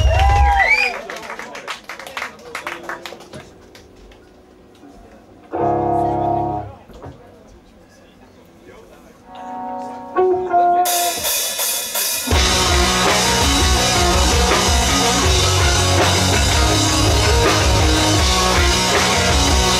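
Live rock band between songs: cheering voices and a few drum hits die away, then a lull with a single strummed electric guitar chord and a few picked notes. About twelve seconds in, the full band (drums, distorted guitars and bass) comes in at once and plays on steadily and loudly.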